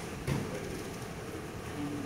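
Steady hum of a large hall's room noise, with one sharp impact about a third of a second in from the karate technique being demonstrated.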